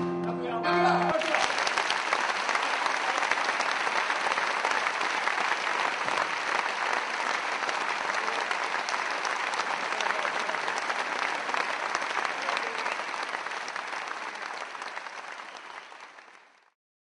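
A group of male voices holds a final sung chord that ends about a second in. An audience then applauds steadily, and the applause fades away near the end.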